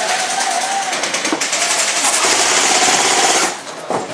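Loud continuous rattling noise made of very rapid clicks, which cuts off abruptly about three and a half seconds in.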